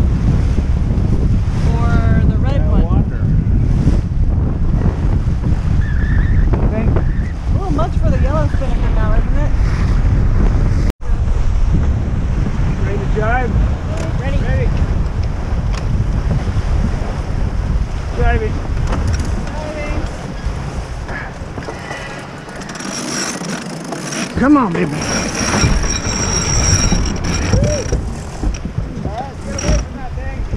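Wind buffeting the microphone over water rushing past a racing sailboat's hull, with faint crew voices underneath. The wind rumble eases a little past two-thirds of the way in, and a few high clicks and rings are heard near the end.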